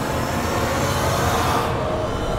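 A dense, low rumble of soundtrack sound design, swelling a little about a second in and losing its high end near the end.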